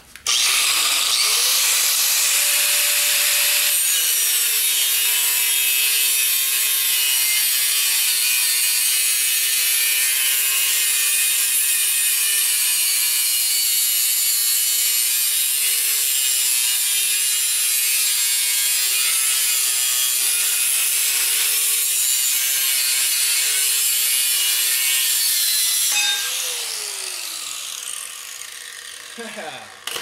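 Angle grinder with a cut-off disc cutting steel square tube. The motor starts with a rising whine, drops slightly in pitch as the disc bites into the metal a few seconds in, and runs steadily under load. Near the end it is switched off and winds down with a falling whine.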